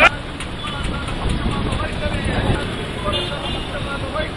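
Steady street traffic noise with faint voices from a crowd mixed in, a few brief voice fragments about three seconds in.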